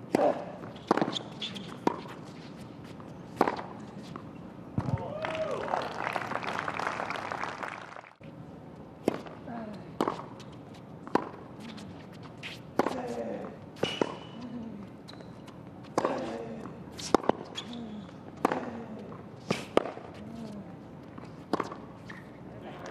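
Tennis rallies on a hard court: a racket strikes the ball about every second or so, with the players grunting on some shots. A crowd reaction fills the middle of the first point, then a cut, then a second rally of crisp racket hits.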